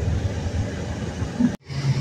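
Steady low engine rumble of a vehicle, which breaks off abruptly near the end.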